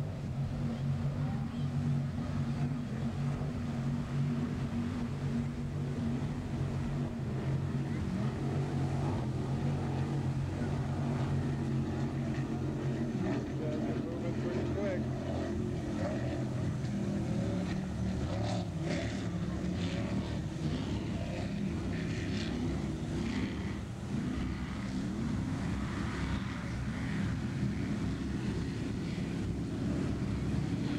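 Engines of offshore racing powerboats running at speed out on the water, a steady drone that is strongest in the first half and weakens after about twelve seconds.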